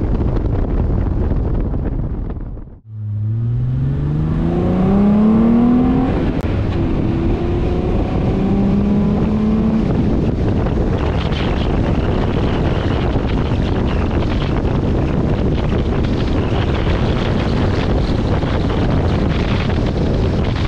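Wind on the microphone over a 2006 Ford Mustang's 4.0 L V6, breathing through headers and a Magnaflow exhaust. After a brief dropout near the start, the engine note climbs steadily under acceleration for about three seconds, breaks off at a gear change, and climbs again. It then settles into steady wind and road noise at cruise.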